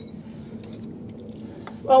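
Water trickling from a plastic bottle onto compost in seedling pots, a faint steady pour, with a woman starting to speak near the end.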